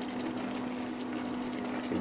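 A pot of chicken and green pea stew simmering, a steady bubbling hiss with a faint steady hum underneath.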